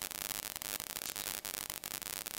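Steady electronic hiss from the recording chain, with faint irregular crackling ticks running through it.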